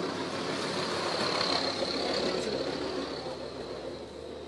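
A road vehicle passing by, its engine and tyre noise swelling to a peak about halfway through and then fading away.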